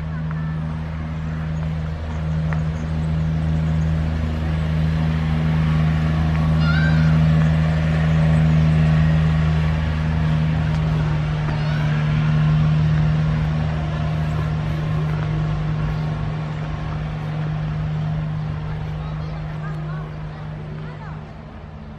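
A steady, low engine-like hum that grows a little louder around the middle, with a few short bird chirps over it.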